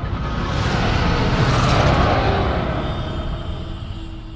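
Logo-intro sound effect: a rumbling whoosh that swells to a peak about halfway through, then fades away.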